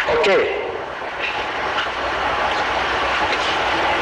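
A man's brief "OK", then a steady rumbling noise with a low hum that grows slightly louder.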